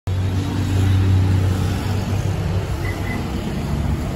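Hyundai Creta engine idling with a steady low hum. Two short faint high beeps sound about three seconds in.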